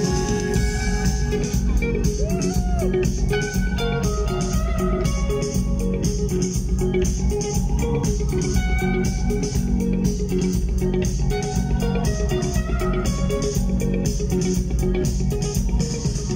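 A live rock band playing an instrumental passage with no singing: electric guitar and bass over a steady drum beat with a ticking cymbal. It is heard from among the audience.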